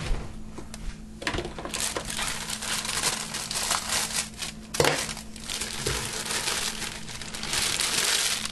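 Crinkling of the plastic bag of a boxed cake mix as it is handled, cut open and emptied into a stainless steel mixing bowl, with one sharp click about five seconds in.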